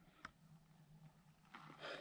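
Near silence, with a single faint click about a quarter-second in and a soft, breathy noise near the end.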